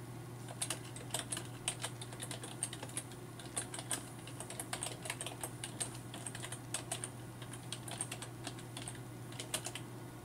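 Typing on a computer keyboard: an irregular run of key clicks, starting about half a second in and stopping shortly before the end, over a steady low hum.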